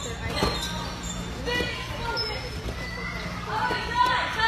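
Children's voices calling out and chattering across a trampoline park, over a steady background hum, with a sharp thump about half a second in from someone landing on a trampoline.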